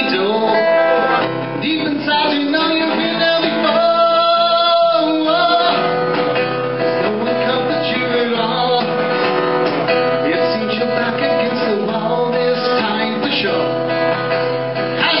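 Solo acoustic guitar playing a song, its chords running on without a break.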